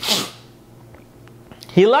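A man lets out a short, sharp puff of breath, a sneeze-like burst with his lips closed. Quiet room tone follows until he starts speaking again near the end.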